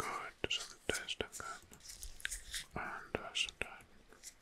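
Soft close-mic whispering, breathy and without clear words, broken by several sharp clicks.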